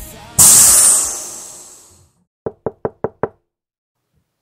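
A loud hissing crash that fades out over about a second and a half, then, after a moment of silence, five quick knocks on a door in under a second: trick-or-treaters knocking.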